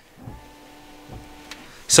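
Front camera washer pump of a 2024 GMC Sierra HD humming steadily as it sprays fluid over the front camera lens, stopping with a small click about a second and a half in.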